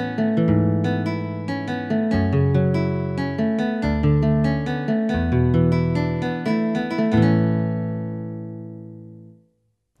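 Yamaha PSR-F51 portable keyboard playing its built-in guitar voice (voice 016): a sequence of chords over moving bass notes. The last chord, struck about seven seconds in, rings out and fades away.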